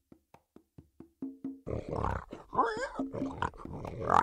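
Cartoon song intro: a run of wood-block taps coming closer together, a few short tuned notes, then cartoon pigs grunting and oinking over light music.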